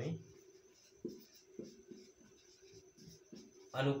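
Marker pen writing on a whiteboard: a series of faint, short, irregular strokes as a word is written out.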